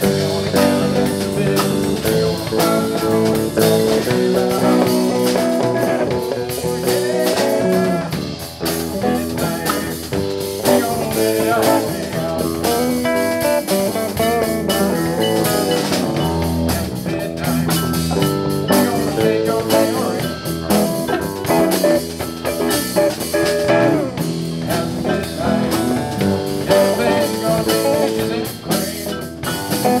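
Live band playing an instrumental passage on electric guitars, bass guitar and drum kit.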